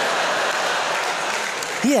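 Studio audience applauding after a punchline, a steady dense clatter of many hands that eases off slightly near the end as the comedian starts speaking again.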